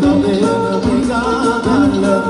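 Live Albanian wedding-song medley: a man singing with band accompaniment.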